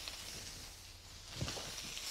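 Faint sizzle of cooked rice and mushrooms in a frying pan, the heat just turned off. There is a soft knock about one and a half seconds in, after which the hiss grows a little louder.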